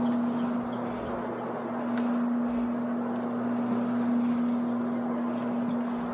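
Iron Man rotary carpet-cleaning machine running with its pad scrubbing carpet: a steady motor hum over a rushing, scrubbing noise that swells and eases slightly as it is worked back and forth. The carpet here has had little cleaning solution, so the pad is binding on it as it is too dry.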